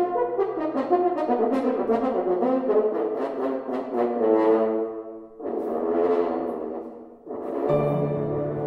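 French horn playing in its low register with piano accompaniment: a moving melodic phrase, two brief dips in loudness in the second half, then a low held horn note entering near the end.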